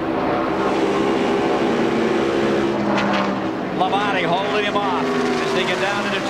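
NASCAR Winston Cup stock car's V8 engine running at racing speed, heard from the in-car camera as a steady drone. A man's voice comes in about four seconds in.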